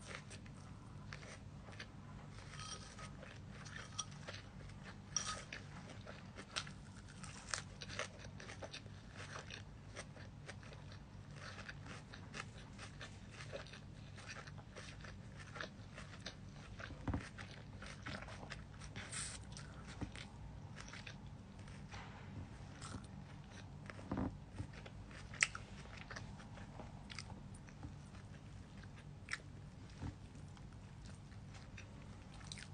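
Close-up chewing of a lettuce and chicken salad: irregular crisp crunches and small wet clicks all through, a few sharper ones around the middle and toward the end. A low steady hum lies underneath.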